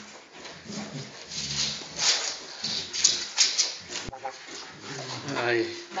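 Alaskan malamutes play-fighting: a run of irregular growls and rough vocal grumbles, with a higher-pitched whine near the end.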